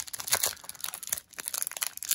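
Foil wrapper of a trading-card pack crinkling in the fingers as it is pulled open, with irregular crackles throughout.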